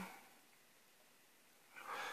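Near silence: room tone, with a short faint intake of breath near the end.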